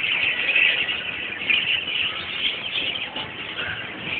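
Many small caged birds chirping together in a continuous, dense chatter.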